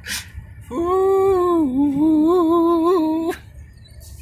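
A man's voice holding one long, wavering sung note that dips in pitch partway through, closing out a doo-wop song. A sharp click comes just before it, and the note cuts off suddenly with another click.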